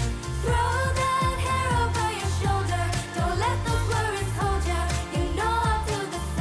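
A pop song: a lead vocal sings a wavering melody over a steady drum beat and a heavy bass line.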